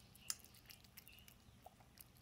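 Faint sounds of a cat chewing chunky wet cat food from a metal bowl: a scatter of soft wet clicks and smacks, one a little louder about a third of a second in.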